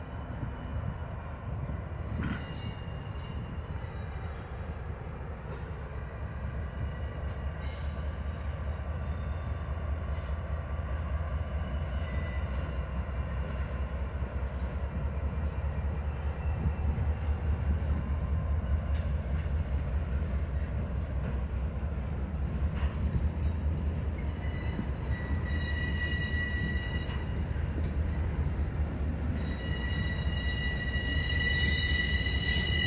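Norfolk Southern diesel locomotives pulling an intermodal train slowly past: a steady low rumble that grows gradually louder as the train comes closer, with thin high wheel squeal near the end.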